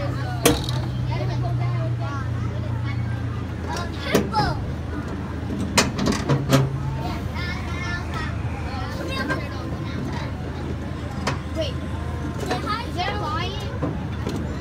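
Small amusement-park train ride running along its track: a steady low engine drone, with a few sharp knocks and clanks from the moving cars.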